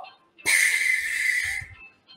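A man blowing out one long breath through pursed lips, demonstrating an exhale. It is a breathy hiss of a little over a second, starting about half a second in.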